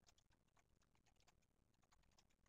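Near silence: room tone with very faint, irregular clicks.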